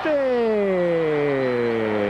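A male football commentator's long drawn-out cry: one held vowel sliding slowly down in pitch as a shot on goal is missed.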